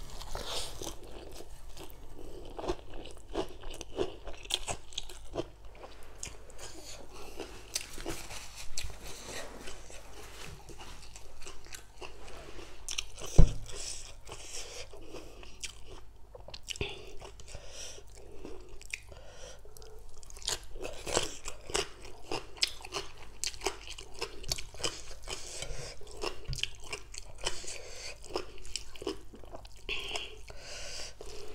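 Close-up eating: crisp crunching, biting and chewing of spicy green papaya salad with rice noodles and raw leafy vegetables, many small crunches in quick succession. One sharp knock about halfway through is the loudest sound.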